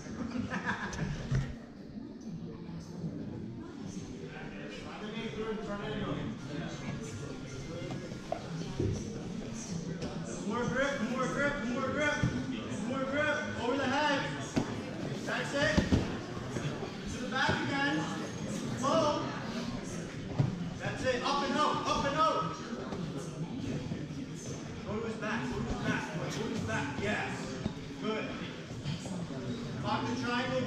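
Voices of onlookers and coaches talking and calling out in a large hall, with a few short thuds from the grapplers moving on the mat.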